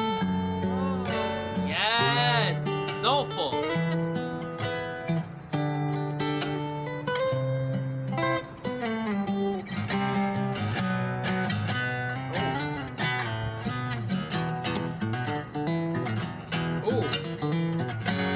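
Solo acoustic guitar played fingerstyle, with a melody line picked over held bass notes.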